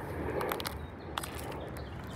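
Low outdoor background noise with a few faint, sharp clicks scattered through it.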